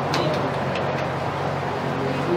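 A steady low hum with faint room noise and a few faint clicks.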